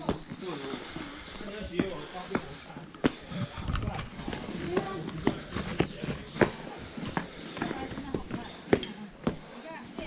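Footsteps and sharp, irregular taps on stone steps, with people talking in the background.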